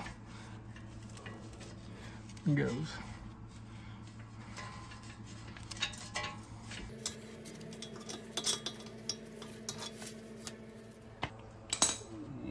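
Light metallic clinks and taps of hand tools and steel brake parts being handled during a rear brake job, scattered through the second half, with one sharp click near the end. A steady low hum runs underneath and shifts to a slightly higher tone a little past halfway.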